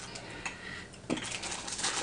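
Faint chewing and mouth sounds while eating: scattered small clicks, a sharper click about a second in, then a run of fine crackly clicks.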